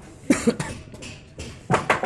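A person coughing: two pairs of short coughs, the second pair near the end.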